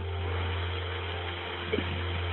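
Steady hiss and low hum of a recorded telephone line, with nobody talking.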